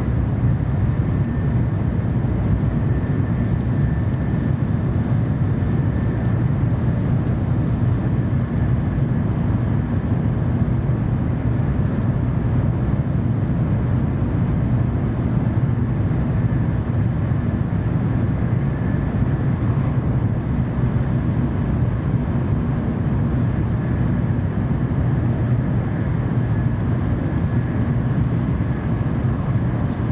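Interior running noise of a JR Central N700A Shinkansen heard from inside the passenger cabin: a steady, even rumble with a faint high whine held at one pitch.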